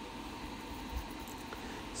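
Faint, steady whir of an electric fan running, turned up to a higher speed.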